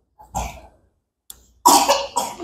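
A person coughing: a short cough about half a second in, then a louder, rougher cough near the end.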